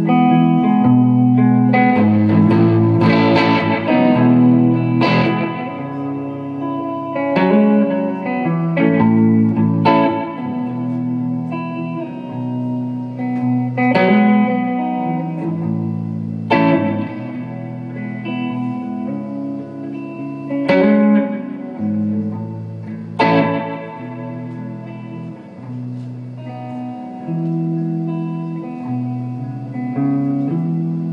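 Electric guitar played solo and live without singing: ringing chords and picked notes, with a hard strummed chord every few seconds.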